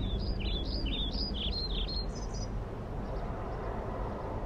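A small bird singing a quick run of short, falling chirps for the first two seconds or so, over a steady low outdoor rumble.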